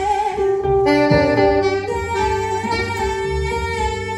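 Live jazz band playing, a saxophone carrying held, pitched notes over electric guitar and drums.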